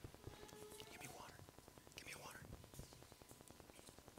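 Near silence: faint, murmured voices off the microphone over room tone.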